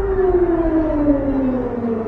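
A siren-like wail sliding slowly and steadily down in pitch over a low rumble that fades out near the end.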